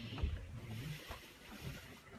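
Muffled low rumble of a handheld camera's microphone being jostled as people walk, with a few soft knocks; the loudest is a thump about a quarter second in.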